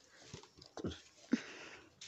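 Faint rustling of a handloom silk saree as it is unfolded and spread by hand, with a few soft knocks as the cloth is laid down.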